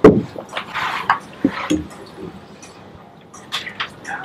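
Handling noise as a phone is picked up from a desk and worked in the hands: a sharp knock at the start, then scattered light clicks and knocks, with a quick cluster of clicks near the end.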